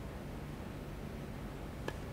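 A hushed snooker arena with a steady low hum, then near the end a single sharp click of the cue tip striking the cue ball.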